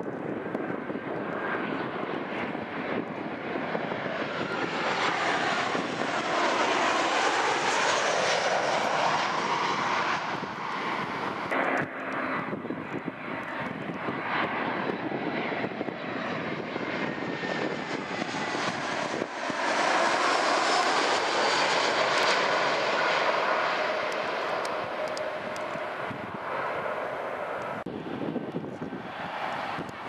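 Twin-engine jet airliners on landing approach passing low overhead, one after the other: first a Jetairfly Boeing 737, then an Alitalia Airbus. Each pass swells to a loud engine roar with a whine that falls in pitch as the plane goes by, and there is a cut between the two passes about twelve seconds in.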